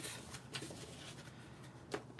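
Faint handling of card stock: light rustles as paper pieces are moved and set down on a table, with a small tick near the end.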